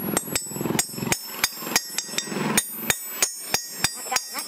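Hand hammer striking steel on a flat steel block, a quick even series of sharp ringing metal blows, about three or four a second.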